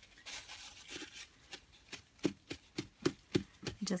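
A crumpled paper towel rustling as it is rubbed over a wet, stain-sprayed cardstock butterfly die-cut, then a run of quick light taps, about three a second, as it dabs the excess spray stain off.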